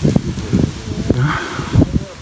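Leaves rustling close to the microphone, with a few low thumps of wind or handling noise.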